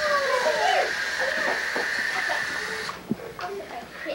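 Children's voices over a steady hiss that stops about three seconds in, followed by a quieter stretch with a few faint knocks.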